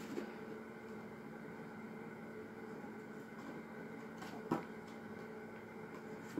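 Quiet room tone with a steady low hum, and soft handling of a paper gift bag and its paper contents, with a short rustle about four and a half seconds in.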